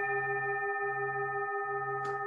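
Heavy hand-hammered Jambati Tibetan singing bowl ringing on after being struck on the inside with a wooden striker. Its deep base note, a C, sounds together with several higher overtones, and the low note wavers in slow pulses about every three-quarters of a second.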